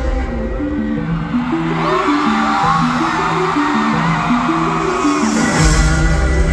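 Live arena pop-rock band in a breakdown: the drums and bass drop out, leaving sustained keyboard chords with many crowd voices rising over them. The full band, drums and bass, comes back in about five and a half seconds in.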